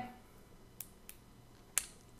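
Fingers handling an under-eye hydrogel gel patch and its plastic liner: a couple of faint clicks, then one sharp snap near the end.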